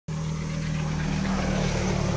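A vehicle engine running steadily, a low even hum over a wash of noise.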